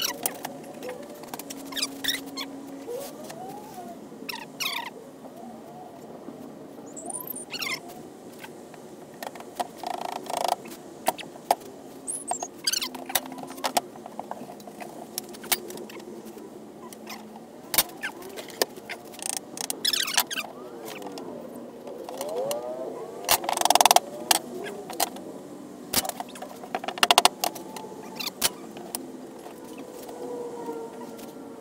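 Irregular knocks and clacks of cabinet-door frame pieces being handled and fitted together and bar clamps being set during a glue-up, with a few short squeaks of parts rubbing in between.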